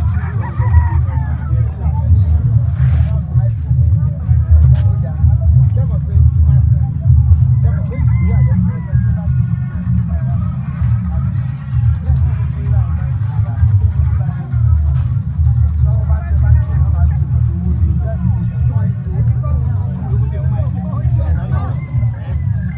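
Loud, uneven low rumble throughout, with faint voices behind it.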